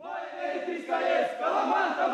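A group of folk dancers shouting together without accompaniment, many overlapping voices with rising and falling pitch. These are typical of the calls Moldovan dancers shout during a dance.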